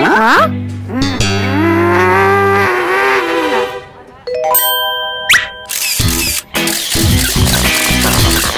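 Cartoon sound effects: a quick rising glide, then a long, low, wavering vocal sound over a steady drone, then a short stepped run of chime-like tones ending in a rising swoop. Upbeat music with a beat comes in about six seconds in.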